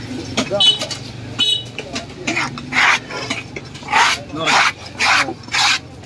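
A large curved fish-cutting knife scraped across the top of a wooden chopping block in about five short strokes, roughly half a second apart, starting near three seconds in. The blade is clearing fish scraps off the block.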